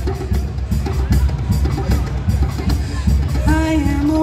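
Live band music between vocal lines: hand drum and drum kit keep up a steady beat. Near the end a singer comes back in on a long held note.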